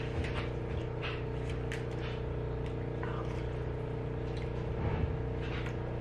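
A steady mechanical hum in the room, with a few faint clicks of a toddler's spoon against a plastic plate and tray.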